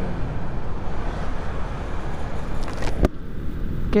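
Motorcycle engine humming steadily under wind and road hiss while riding in traffic. A single sharp click about three seconds in, after which the hiss gets quieter.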